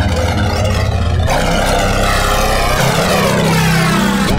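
Electronic music: a dense, distorted synthesizer drone over a deep bass that changes note twice, with a falling pitch sweep through the second half.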